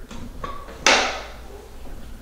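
Jazzy Elite HD power chair's drive-motor freewheel lever being flipped back into gear: a faint tick, then a single sharp clack just under a second in as the motor re-engages drive.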